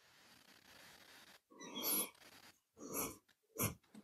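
Three faint, short breathy noises picked up on an open microphone in a quiet pause: one just under two seconds in, one at about three seconds, and a sharper one shortly after.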